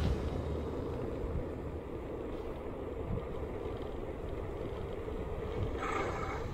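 Steady low rush of wind on the microphone of a bicycle-mounted camera while riding along a road, with tyre and road noise. A short, brighter sound comes just before the end.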